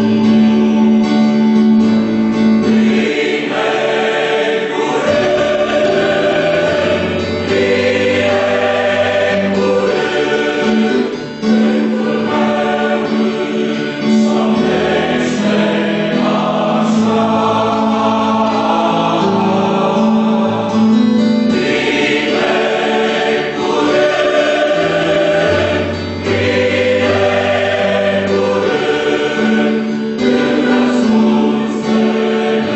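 Mixed choir of men's and women's voices singing a hymn in harmony, in long held phrases with a short break about eleven seconds in.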